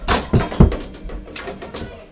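Three heavy thumps in quick succession in the first second, then lighter knocks and rustling in a small room.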